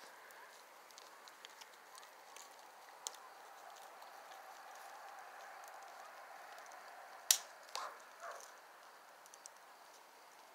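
Bonfire burning with faint crackling and scattered small pops, one sharp pop about seven seconds in.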